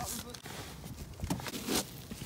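Faint, scattered crunches of snow, a few short soft bursts over a quiet background.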